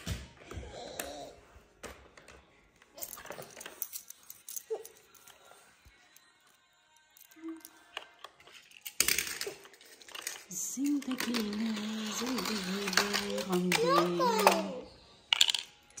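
Small die-cast toy cars and plastic parts clicking and clattering against a plastic toy parking garage in short, scattered taps. Later comes a louder sustained sound of a few held pitched notes, rising near the end.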